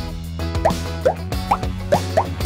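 Upbeat background music with a run of short cartoon 'plop' sound effects, about five quick rising pops roughly two a second.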